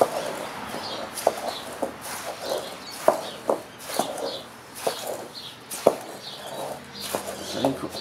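Hands mixing sand and polystyrene beads in a glass bowl: a grainy rustle with irregular sharp clicks of grains and fingers against the glass.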